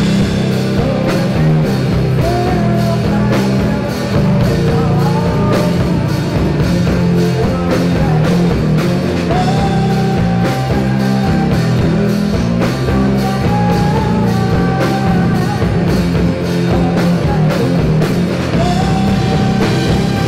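Rock band playing live: electric guitars and drum kit keeping a steady beat under a singer holding long notes.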